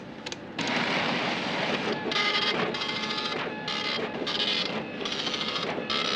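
A few keystroke clicks on a computer terminal keyboard, then the terminal's built-in printer printing a record line by line, in a run of mechanical bursts about half a second long.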